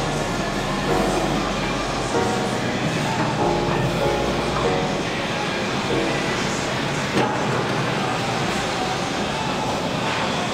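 Instrumental background music with a deep bass line that changes note every second or so.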